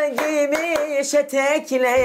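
A man singing a folk tune in long, wavering notes while clapping his hands in a steady rhythm.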